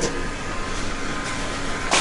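Steady rushing background noise with no clear pitch, like a running fan or machine.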